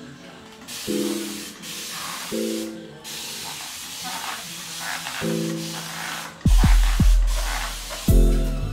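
Hand trigger spray bottle misting the hair in a string of squirts, heard as repeated bursts of hiss with short breaks between them. Background music with held notes plays under it, and a heavy bass beat comes in near the end.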